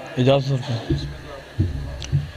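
A man's voice close to a microphone in short bursts, with low thuds under it in the second half.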